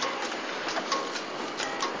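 Steady city street background noise with light scattered clicking.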